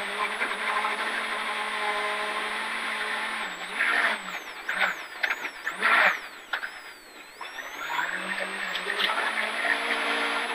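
VW Golf Mk2 rally car engine heard from inside the cabin: a steady high-rev note in fifth gear, then the car brakes and changes down to second with several sharp bursts of sound, the engine falls low about seven seconds in, and it pulls hard again with a rising note toward the end.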